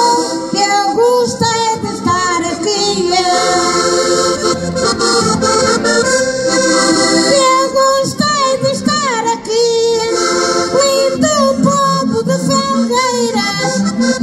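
A woman singing a Portuguese cantar ao desafio verse, accompanied by two button accordions.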